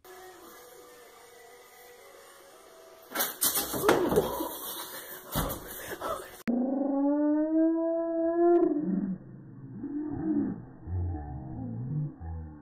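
Loud knocks and clatter a few seconds in, then a dog howling in one long call of about two seconds that rises slightly and levels off, followed by softer wavering vocal sounds.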